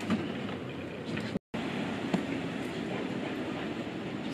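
Steady outdoor street background noise with a few faint knocks as equipment cases are lifted out of a van. The sound drops out completely for a moment about one and a half seconds in.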